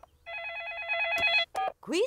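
A cartoon telephone rings once: a trilling electronic ring lasting a little over a second as the dialled call goes through. A voice answers near the end.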